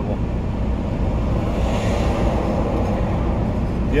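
A semi-truck pulling a trailer drives past close by, its noise swelling and then fading over a couple of seconds. It is heard from inside a parked truck's cab over a steady low hum.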